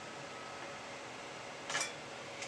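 Desktop PC fans running steadily with a faint whine, among them the CPU cooler's fan still spinning after the cooler has been lifted off the chip. A brief rustle near the end.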